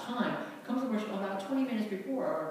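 Speech only: a voice talking.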